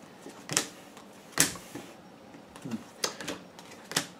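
Tarot cards being handled on a table: a few sharp, irregularly spaced snaps and clicks, one followed by a short sliding swish.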